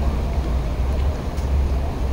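Steady low rumble with the faint murmur of a crowd of people walking and talking across an open plaza.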